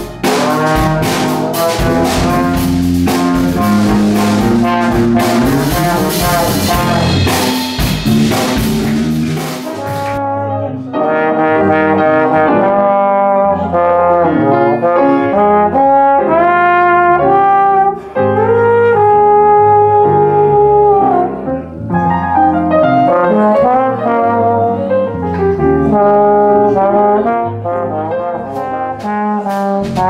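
Live jazz band led by a trombone. For about the first ten seconds it plays over drums and cymbals; then the sound changes abruptly to the trombone playing long held melody notes over piano and bass guitar, with cymbals coming back near the end.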